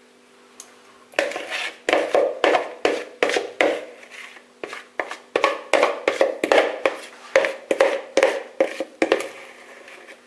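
A metal spoon scraping batter out of a plastic mixing bowl: a run of short, quick scrapes, about two a second, starting about a second in and going on for some eight seconds.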